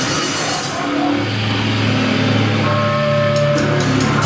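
A live punk band's electric guitar and bass hold sustained notes that ring out over amplifier noise, with the drums silent. Drum hits come back in near the end.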